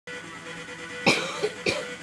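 A young man coughing twice, the first cough about a second in and the second just over half a second later.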